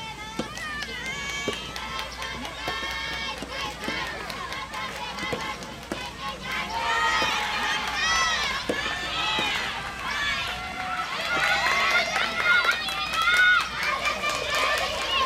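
Soft tennis rally: a rubber ball struck by rackets in a string of sharp hits roughly a second apart, under high shouted calls and cheers from players and supporters that grow louder about halfway through.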